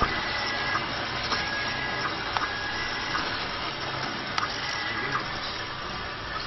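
Automatic flat-bottle labelling machine with an inline printer running: a steady mechanical hiss from its motors and conveyor. Short high whines about a second long start and stop again and again, with occasional sharp clicks.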